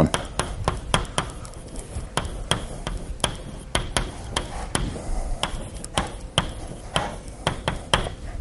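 Chalk tapping and scraping on a blackboard as words are handwritten: a run of sharp, irregular clicks, a few each second.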